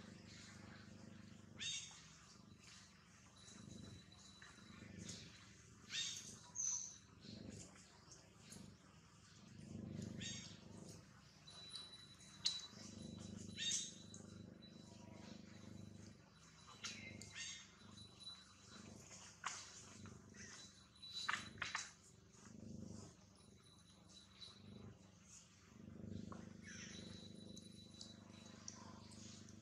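Faint outdoor ambience with a low steady hum. Short rustles and crackles of dry leaf litter, stirred by the macaques, come and go throughout, with a faint thin high tone on and off.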